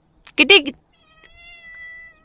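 A domestic cat's single long meow, held about a second at a steady pitch and fainter than the voice before it. It follows a woman's short, loud call to the cat.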